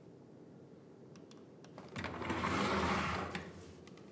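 A drafting machine's straight-edge sliding along its track across a drawing board: a few light clicks, then a rolling mechanical rattle that swells and fades over about a second and a half.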